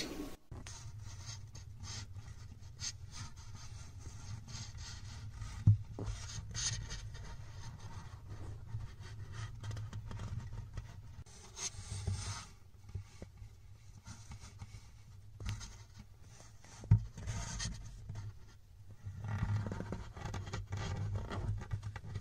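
Faint, intermittent scraping and rubbing with scattered light clicks, over a steady low hum.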